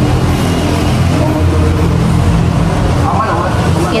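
A motor vehicle's engine running steadily close by, a constant low hum, over the general noise of street traffic. A voice is briefly heard near the end.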